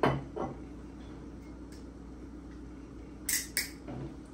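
Kitchen handling sounds: a sharp knock of something set down hard right at the start, a smaller one just after, then two short, high scraping hisses near the end.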